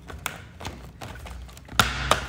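Hands working at a cardboard soda-can case to open it: a few light taps, then a louder knock of the box near the end.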